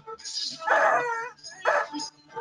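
Dogs barking and yipping over a video call, in two loud bursts, one early and one near the end.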